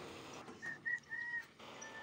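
Three faint, short bird chirps, each on one steady pitch, from about half a second to a second and a half in.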